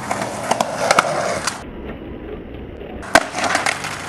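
Skateboard wheels rolling on asphalt with several sharp clacks. About three seconds in there is a loud smack, then more knocks, as the board and skater hit the road in a fall.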